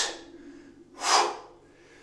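A man's two sharp, forceful exhalations of exertion during kettlebell lifts: a short, hissy one right at the start and a louder, fuller one about a second in.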